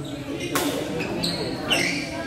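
Badminton rally: a racket strikes the shuttlecock with one sharp smack about half a second in, and shoes give short squeaks on the court floor near the end.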